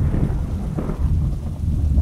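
Thunderstorm ambience: a low, steady rumble of thunder with rain underneath.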